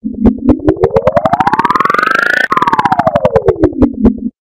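Edited electronic logo sound under a speed-change effect: a pulsing tone whose pitch and pulse rate climb together for about two and a half seconds, drop abruptly, then slide back down to where they started.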